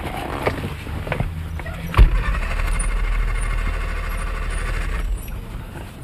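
A car's starter motor cranking the engine for about three seconds without it catching, after a few clicks; the engine will not start, which is put down to its being cold.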